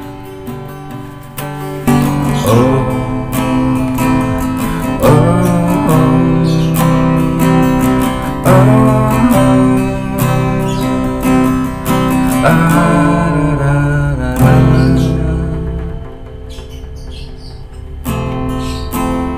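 Acoustic guitar strummed in chords while a man sings along; the playing softens about two seconds before the end.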